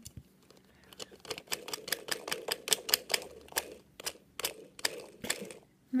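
Plastic toy washing-machine candy kits clicking and rattling as they are worked back and forth to stir the foaming candy drink mix inside: a quick, irregular run of sharp plastic clicks, several a second.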